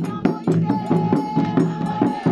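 Women singing a folk song to large hand drums beaten with sticks in a quick, steady beat, with one high note held for about a second midway.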